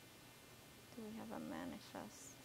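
A person's brief, faint murmur of voice, under a second long, about halfway through, over quiet room tone.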